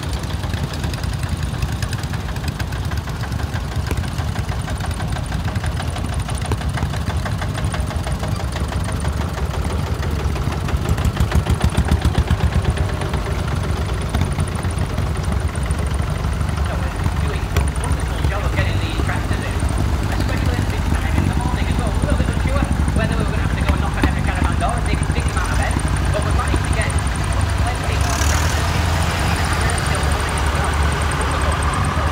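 Several vintage tractor engines running at low speed as a line of old tractors drives slowly past. About eleven seconds in, one passes close and its regular pulsing beat is briefly louder.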